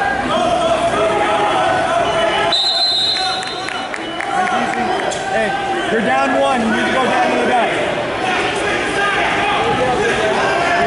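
Spectators and coaches calling out and shouting over one another in a large echoing gymnasium, many voices overlapping, with a brief lull a few seconds in.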